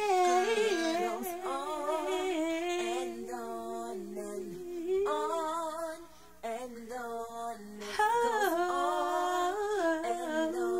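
Wordless a cappella female vocals, humming in layered harmony with a wavering vibrato. The track is slowed to 88%, which lowers and stretches the voices. The sound drops away briefly about six seconds in.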